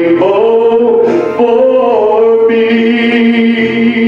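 A man singing a slow song solo into a handheld microphone, holding long, steady notes.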